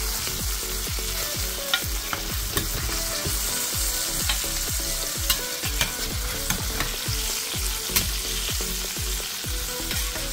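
Chicken pieces sizzling steadily as they fry in fat rendered from the chicken itself, with no oil added, in a stainless steel Saladmaster skillet. A few sharp clicks come as a spatula knocks against the pan while the pieces are turned.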